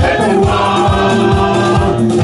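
Live gospel worship music: singing into a microphone over keyboard accompaniment, with hands clapping along to a steady beat.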